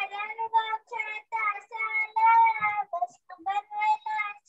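A young girl singing solo, unaccompanied, in short phrases with some notes held.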